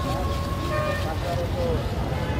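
Busy street ambience: a steady rumble of traffic with people's voices close by.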